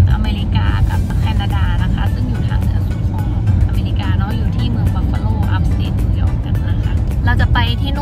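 Steady low road rumble inside a moving car's cabin, with background music playing over it.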